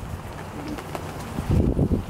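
Vizsla puppies growling and grumbling as they play-wrestle, low and throaty, louder near the end.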